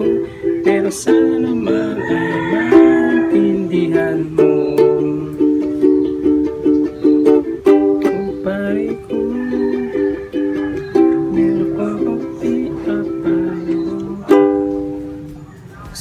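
Ukulele strummed rhythmically through a chord progression of Am, C, G and Em. Near the end a last chord is struck and left to ring out and fade.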